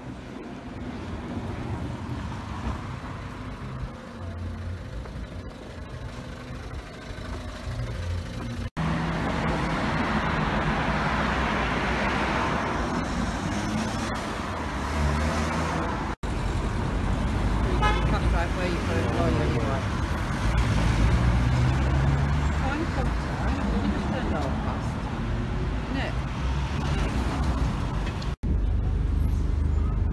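Street traffic noise from cars and vans passing on town roads, in several short clips joined by abrupt cuts and louder after the first cut. The last couple of seconds are inside a bus, with its engine running.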